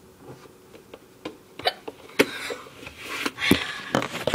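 Handling noise from a phone camera being picked up and moved: scattered clicks and knocks with some rustling, louder in the second half.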